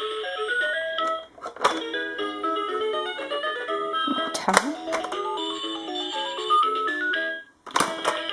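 Electronic tunes from a Thomas & Friends pop-up toy, a beeping melody of quick stepped notes playing as each button or lever is worked. Sharp plastic snaps of the pop-up doors break in about a second and a half in, around four and a half seconds, and at the very end.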